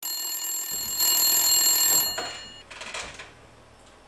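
A bell-type telephone ringing: one long ring that starts abruptly, holds for about two and a half seconds and cuts off.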